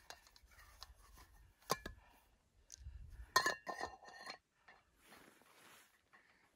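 Small items of camp tea gear clinking and knocking as they are handled on a rock, with a quick run of knocks about three and a half seconds in and a soft hiss near the end.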